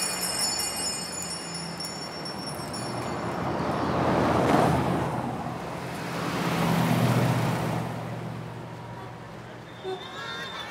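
Street traffic: two vehicles pass one after the other, their sound swelling and fading about four and seven seconds in, over a steady background hum. Faint high ringing tones sound in the first few seconds.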